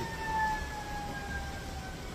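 A distant siren: one long wailing tone sliding slowly down in pitch, over a low rumble.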